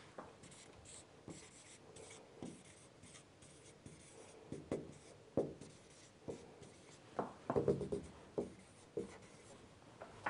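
Marker pen writing on a whiteboard: a series of short, faint strokes, busiest about seven to eight and a half seconds in.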